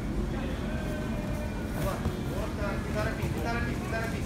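Indistinct voices of spectators and coaches calling out over a steady low rumble of room noise. The voices grow busier in the second half.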